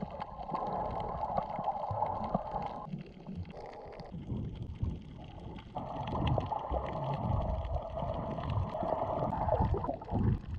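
Muffled underwater sound from a camera submerged while snorkelling: low rumbling, gurgling water noise. A steadier hiss runs over it, drops out for about three seconds in the middle, then returns.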